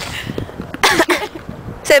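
A person's single short vocal burst, a noisy outburst of breath with some voice in it, about a second in. A spoken word follows near the end.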